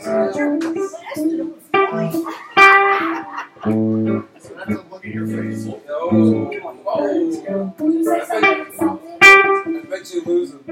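Amplified electric guitar and bass playing short, separate phrases, with brief pauses between the notes.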